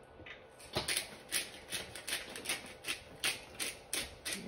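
A steady run of sharp clicking taps, about three a second, from kitchen food preparation at a countertop.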